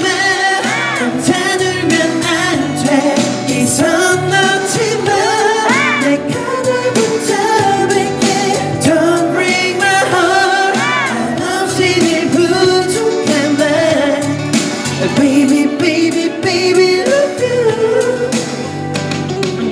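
Male pop vocalist singing a K-pop song into a handheld microphone over a backing track with a steady beat and bass line.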